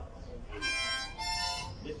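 Two short held musical notes, each about half a second long, sounding a little over half a second in, with a reedy, bright tone.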